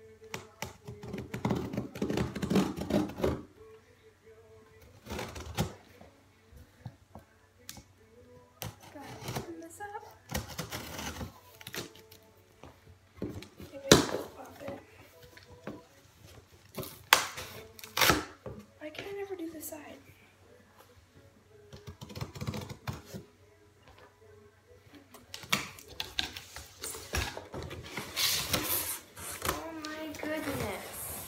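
Cardboard shipping box being handled and opened by hand: irregular knocks, scrapes and rustles of the flaps and packaging, with two sharper knocks in the middle.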